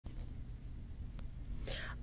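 Faint low rumble of a handheld camera being moved, with a faint click about a second in, and a person's short breath near the end, just before speech begins.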